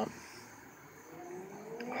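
Faint motor hum, its pitch rising slowly and steadily through the second second.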